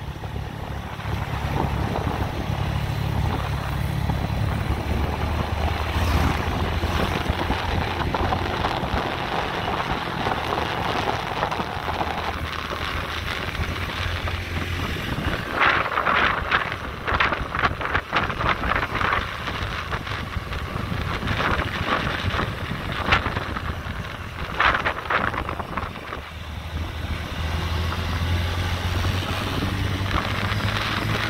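Motorbike engine running at road speed, its pitch shifting a few times as the throttle changes, with wind buffeting the microphone in gusts, loudest in the middle of the ride.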